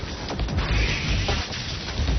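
Dramatic background music over the crash and rumble of a concrete bridge span collapsing in a controlled demolition.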